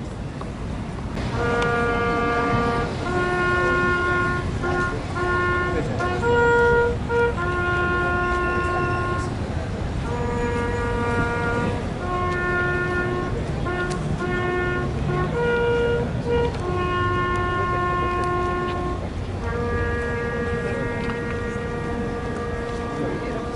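A single wind instrument plays a slow solemn melody of long held notes, one note at a time, beginning about a second in, over steady low outdoor background noise.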